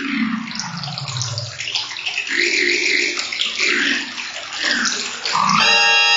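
Live electronic music played by gesture with handheld controllers: a falling glide, then bubbling, watery, wobbling noise textures. About five and a half seconds in, a loud sustained drone of many steady tones starts, like an organ chord.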